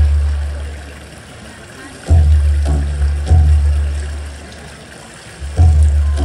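Dance music with deep drum strikes that ring out and fade: one at the start, three in quick succession a little after two seconds in, and another near the end.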